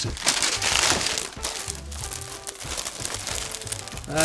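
A clear plastic bag and parchment paper crinkling and crackling as they are handled, in a run of small irregular crackles. Background music plays low underneath.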